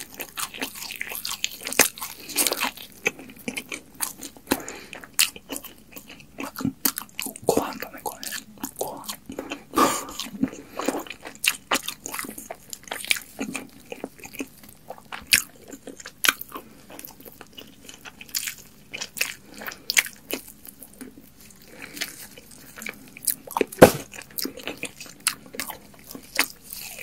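Close-miked biting and chewing of crispy-coated KFC fried chicken: irregular crunches and mouth clicks, with one sharp, loud crunch about two seconds before the end.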